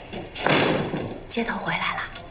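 A dull thump with a short ringing tail about half a second in, then a voice speaking a short line.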